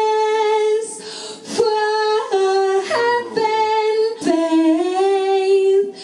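A woman singing solo and unaccompanied, holding long notes that glide from one pitch to the next, with short breaks about a second and a half in and again past four seconds.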